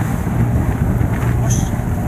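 Yamaha outboard motor running steadily on a RIB, a constant low hum, with wind buffeting the microphone.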